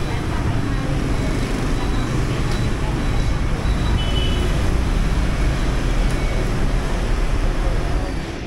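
Steady city street traffic noise with a heavy low rumble, carrying through an open shopfront.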